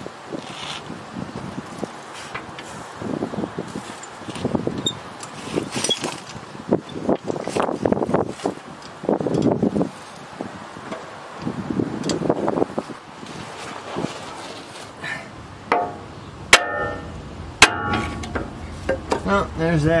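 Tools and metal suspension parts being handled, with low muffled sounds through the first half and two sharp metal clinks with a short ring about three-quarters of the way in.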